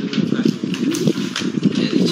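Irregular taps and rustles from stacks of paper ballot booklets being leafed through and lifted by hand.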